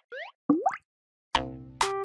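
Cartoon logo sound effects: a short rising chirp, then a louder upward-sliding pop about half a second in. After a brief pause, a bright struck note rings out and a jingle starts near the end.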